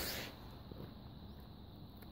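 Quiet background in a pause: a faint steady hiss with a low rumble, and no distinct sound event.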